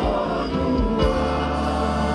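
Live gospel worship music: a mixed choir of men and women singing together into microphones over band accompaniment, holding sustained notes over a steady bass.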